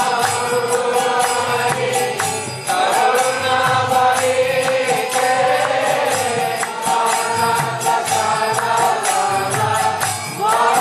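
Devotional kirtan: a mantra chanted to a slow, held melody, with small hand cymbals (kartals) struck in time.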